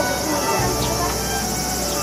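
Insects shrilling steadily at a high pitch outdoors, with faint children's voices underneath.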